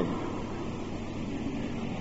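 Steady hiss with a low, even hum underneath: the background noise of an old recording from 1982, heard between spoken phrases.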